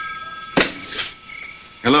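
The last of a telephone bell ring dying away, then a sharp click about half a second in as the corded handset is lifted from its cradle, and a softer knock a moment later.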